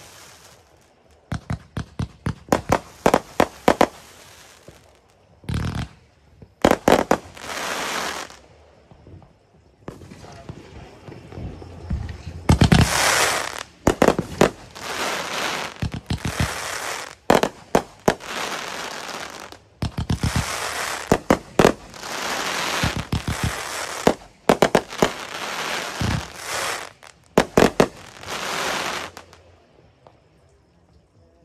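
Fireworks going off: quick volleys of sharp bangs as shots launch and burst, alternating with stretches of dense crackling that last a second or two each.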